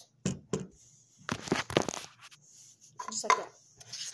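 A handful of short knocks and clatters from objects being handled and set down on a hard surface, in a few clusters with quiet between.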